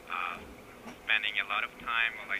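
Indistinct speech coming through a phone's speaker, thin and cut off above the telephone band: a short burst at the start, then talking again from about a second in.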